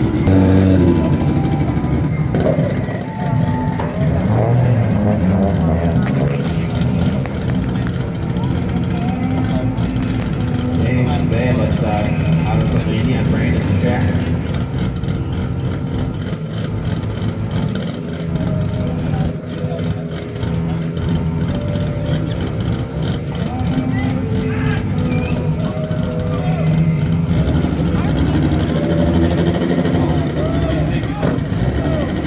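Drag cars' engines running steadily near the start line, mixed with people talking.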